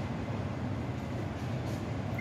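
Steady low background rumble with a soft hiss, even throughout, with no distinct event.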